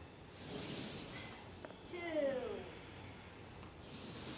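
A man breathing audibly in time with a bending-and-rising exercise. There is a long, breathy breath about half a second in, and another begins near the end.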